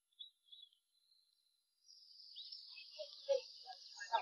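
Faint outdoor ambience: a thin, high, steady insect-like hiss sets in after about a second, with a few faint short chirps near the end.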